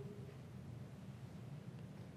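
A quiet pause with a faint, steady room hiss. A spoken word's echo fades out just at the start.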